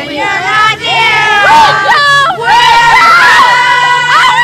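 Concert audience screaming and cheering: many high-pitched voices shrieking over one another.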